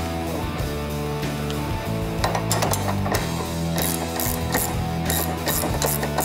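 Hand socket ratchet clicking in short runs from about two seconds in as it tightens a control-arm mounting bolt, over a steady music bed.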